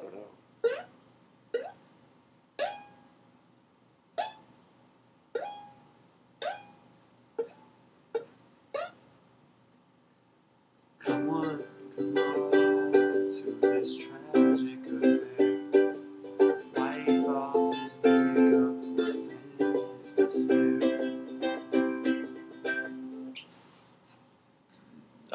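Ukulele played by hand: single notes plucked one at a time, about one a second, for roughly nine seconds, then a short pause, then steady strummed chords for about twelve seconds that stop shortly before the end.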